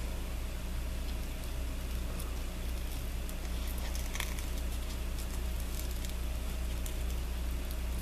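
A steady low hum, with a few faint clicks scattered through it from small scissors snipping at the edge of a paper card.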